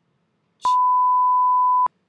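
A single steady beep at one pure pitch, lasting a little over a second. It starts about two-thirds of a second in and cuts off sharply, with a click at each end. It is an edited-in censor-style bleep.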